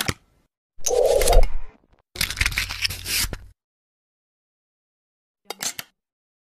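Animated-intro sound effects: two noisy bursts about a second long in the first few seconds and a short one near the end, with silence between.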